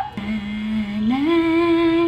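A woman's voice sings a drawn-out, wordless two-note phrase: a steady low note, then a slide up to a higher held note about halfway through.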